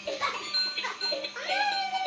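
Battery-powered Spider-Man bubble-machine toy playing its electronic tune, a quick repeating pattern of about three notes a second. In the second half, a high, drawn-out call rises and then falls over it.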